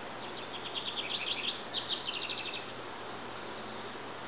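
A small songbird singing a quick series of high chirps in two short runs, over steady background hiss.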